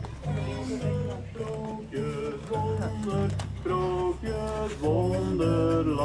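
Song played through the singing statue busts: held sung notes over an accompaniment with a repeating bass line.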